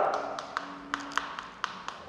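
Chalk writing on a chalkboard: a quick, irregular series of sharp taps and light scrapes as the strokes are made.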